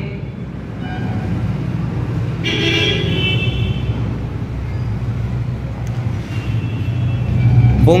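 Steady road-traffic rumble, with a vehicle horn sounding once for about a second near the middle and a fainter horn-like tone shortly before the end.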